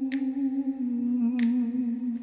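Music soundtrack: one steady held hummed vocal note, with two short crisp hiss-like sounds about a second and a half apart.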